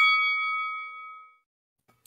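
A boxing-ring bell sound effect ringing on and dying away over about a second and a half, the tail of three quick strikes.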